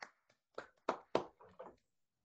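A single person clapping, about six claps in quick succession that trail off just before the end.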